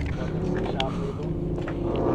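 An engine idling steadily with a low hum, with a few faint light knocks from bottles being handled in a cooler.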